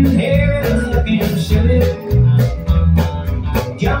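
Live country band playing an instrumental passage between sung lines: drums keeping a steady beat over bass and guitars. The singer's voice ends one line at the start and comes back in at the very end.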